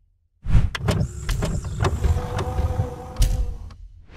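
Mechanical whirring and sliding sound effect for an animated logo outro, with a series of sharp clicks and knocks over a steady hum. It starts about half a second in and cuts off just before the end.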